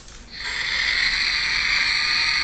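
A robot dinosaur toy giving a steady, harsh hiss through its small speaker, starting about half a second in.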